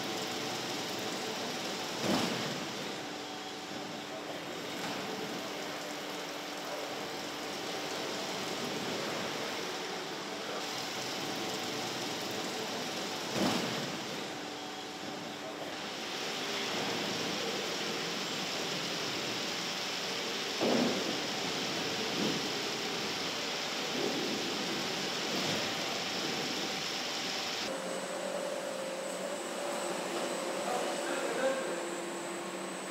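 Car assembly plant machinery noise: a steady mechanical din with faint humming tones and a few sharp metallic knocks. The sound changes character near the end.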